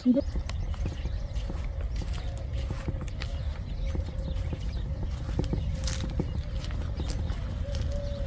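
Low, steady rumble of wind on the microphone outdoors, with faint scattered clicks throughout.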